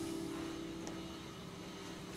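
An Epiphone acoustic-electric guitar's chord ringing out and slowly fading, with a faint handling click about a second in.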